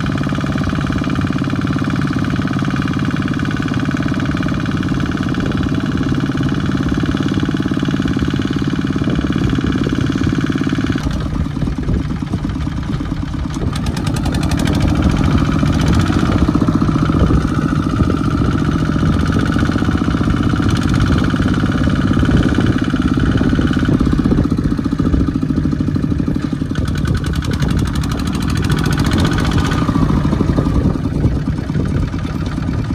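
Single-cylinder diesel engine of a Kubota two-wheel walking tractor running steadily under load as it pulls a trailer through deep mud. The engine note shifts about a third of the way through and runs somewhat louder from about halfway on.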